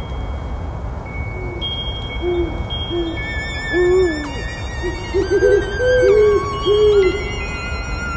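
Spooky night-time sound effects: an owl hooting a dozen or so short hoots, some in quick pairs, over a steady low wind-like rumble, with thin high wavering tones above.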